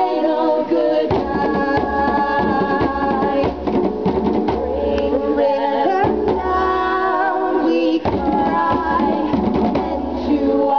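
A song sung by women's voices with musical accompaniment, and hand drumming on tall wooden barrel-shaped drums striking through it.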